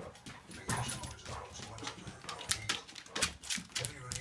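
A puppy and an old Labrador play-wrestling on a wooden floor: scuffling and quick clicks of claws and paws, with brief dog vocal sounds among them.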